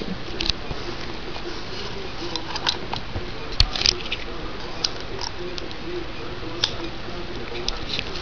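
Handling noise from a handheld camera being moved: scattered small clicks and rustles over a steady room hiss.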